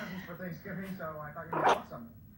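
A very young toy poodle–chihuahua cross puppy whimpering, with a woman's soft, wordless voice beneath. A short, sharp, louder sound comes about one and a half seconds in.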